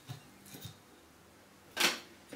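A carved wooden stick is set down on a wooden tabletop, making one sharp knock near the end. Before it there are a couple of faint handling clicks.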